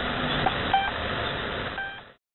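Shortwave radio static from the Russian military station The Pip on 3756 kHz, with two short beeps of its pip marker about a second apart as it returns to its channel marker after a voice message. The hiss and beeps fade out near the end.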